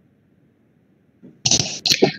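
Near silence for about a second and a half, then a short, loud, hissy burst of breath from a person close to a microphone, with a couple of sharp clicks in it.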